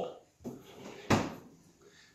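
A single sharp knock about a second in, with a short ring after it.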